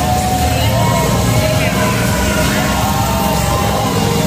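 A voice speaking over a loud, steady low rumble.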